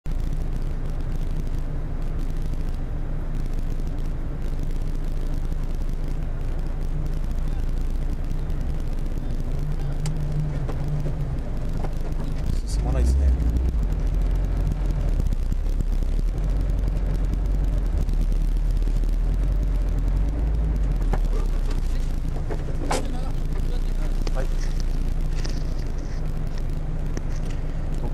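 A rally car's engine idling steadily, heard from inside the cabin. About halfway through it takes on load, deeper and a little louder for several seconds as the car pulls forward, then settles back to idle.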